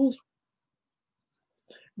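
A woman's word trails off, then near silence, with a faint soft rustle just before she speaks again.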